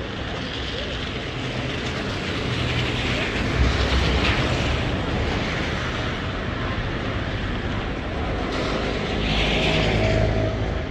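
Street traffic: a steady wash of vehicle noise with a low engine rumble that swells as vehicles pass, about three to four seconds in and again near the end.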